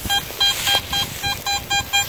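Metal detector beeping over a buried target: a strong, repeatable signal at a single mid-pitched tone, about four short beeps a second as the coil is swept back and forth across the spot. It is reading a high target ID of 82–83, a signal taken for a good coin.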